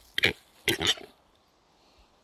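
A lekking male western capercaillie calling at close range: two short, harsh calls about half a second apart, the second a little longer.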